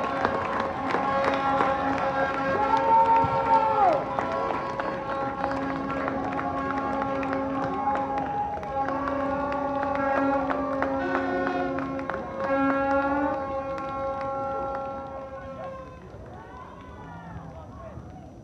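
Music over a stadium public-address system after a home goal, with long held notes that shift pitch every few seconds and die away about 16 seconds in.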